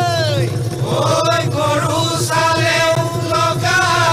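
Bihu folk music: voices singing and chanting in long held notes over a steady low accompaniment, opening with a sung note that rises and then falls.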